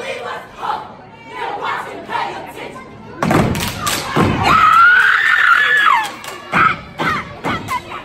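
Step team stepping on a wooden stage: lighter knocks early on, then a heavy unison stomp about three seconds in and another just after six seconds, with a long high-pitched yell held in between and crowd voices around it.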